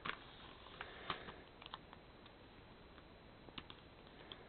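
Faint handling of paper and small stickers on a planner page, with a few soft, scattered ticks as a sticker is peeled and pressed down.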